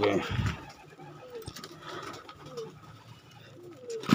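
Domestic pigeons cooing in a rooftop loft, a string of short low coos coming every second or so.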